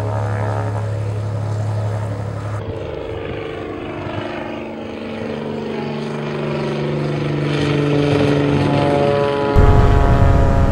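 Single-engine propeller plane's engine running on the ground, a steady drone whose pitch drifts slowly up and down. Near the end it changes suddenly to the louder, deeper engine noise heard inside the plane's cabin.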